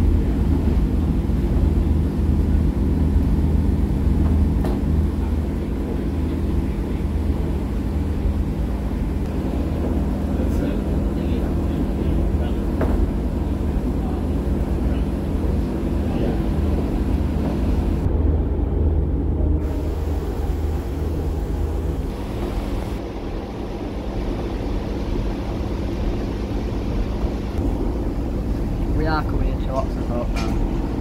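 Cabin noise inside a moving Class 144 Pacer diesel railbus: the steady drone of its underfloor diesel engine over the rumble of the wheels on the track. About two-thirds of the way through, the deep engine note eases off as the unit runs towards the end of the line.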